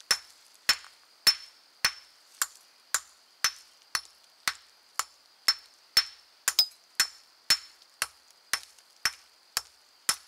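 A hammer tapping lightly and steadily, about two blows a second, knocking concreted rock crust off an iron artillery shell. Each blow is a sharp crack with a short high metallic ring.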